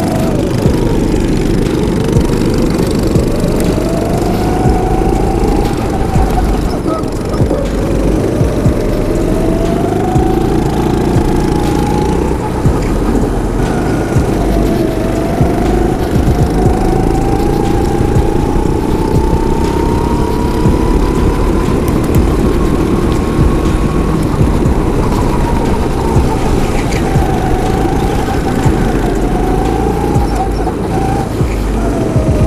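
Go-kart engine running hard under the driver, its pitch climbing in long rises as the kart gathers speed and dropping back several times as he lifts for corners, the highest and longest climb about halfway through. Heavy wind rumble on the helmet camera runs underneath.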